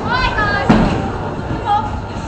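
High-pitched voices call out briefly over the steady hubbub of a busy bowling alley, with one sharp knock about two-thirds of a second in.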